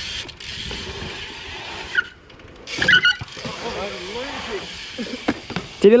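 BMX bikes rolling over a concrete skatepark: a steady rush of tyre and wind noise, with a sharp knock about two seconds in and a louder rush about a second later. Faint distant voices come through near the middle.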